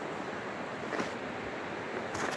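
Steady rushing of river water, even and unbroken, with one faint click about a second in.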